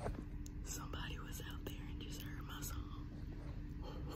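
A woman's quiet, breathy voice close to the microphone, in short broken bits from about a second in to near three seconds, over a steady low hum.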